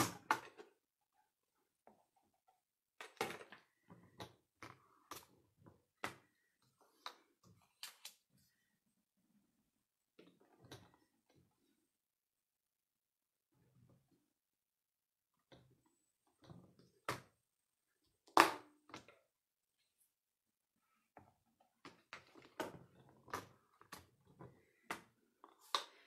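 Scattered light clicks and knocks of metal bar magnets and card stock being moved about on a stamp-positioning platform, with short quiet gaps between them. Two louder knocks come a little past halfway.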